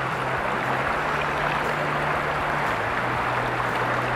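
Steady rush of flowing stream water.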